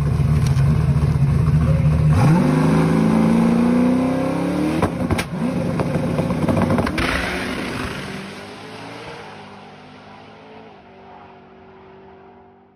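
The single-turbo big-block Chevy V8 in a drag-racing C4 Corvette at the starting line. It holds a loud, steady low note, then its revs climb in rising sweeps from about two seconds in. The sound then fades away over the last few seconds as the car pulls off down the track.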